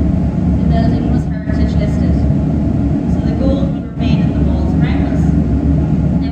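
A woman's voice talking to an audience, heard over a steady low rumble of room machinery.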